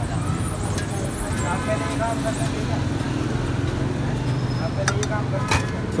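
Steady low hum of street and traffic noise with faint background voices. A few light clicks come from a metal spoon scooping spice mix into clay pots.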